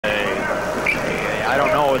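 A television basketball commentator talking over a steady murmur of arena crowd noise, in muffled, narrow-band old broadcast audio.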